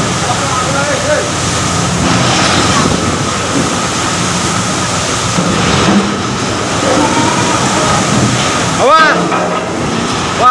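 Storm seawater washing and sloshing across a ship's deck as waves come aboard: a loud, steady rush of water.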